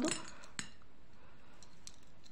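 Plastic beads clicking faintly as nylon beading thread is pulled through them: one sharp click about half a second in, then a few faint ticks near the end.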